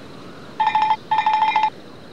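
Telephone double ring: a trilling electronic ring in two short bursts about half a second in, coming from a seashell that rings like a phone.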